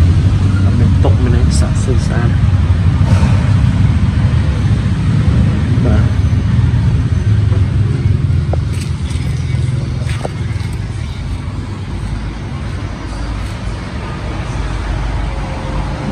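A vehicle engine running steadily with a low hum, easing off somewhat in the second half.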